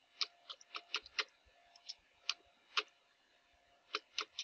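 Computer keyboard keys clicking as a terminal command is typed: about eight keystrokes in an uneven rhythm, with a short pause a little over a second in.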